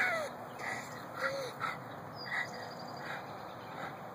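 Short, high animal cries from a dog-and-groundhog fight: two arched squeals in the first second and a half, with brief scattered squeaks through the rest.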